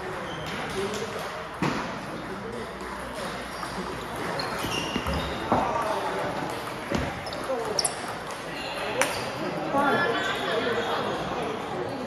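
Table tennis ball struck back and forth in a doubles rally: a handful of sharp clicks of ball on rubber paddle and table, irregularly spaced, over the chatter of voices in a large hall.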